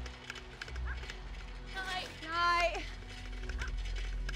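A voice calls out about two seconds in: a short note, then a longer drawn-out call that rises and falls in pitch. Faint ticking and a low steady hum run underneath.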